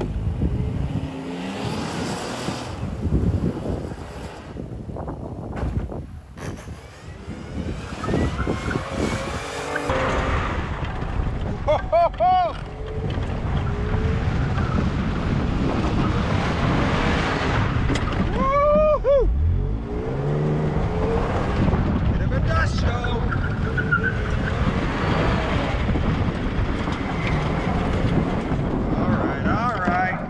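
Suzuki SUV driven hard on dirt: engine and tyre noise. About ten seconds in, the sound turns to close-up engine and wind buffeting on a camera held out of the driver's window. A couple of short shouts come over it.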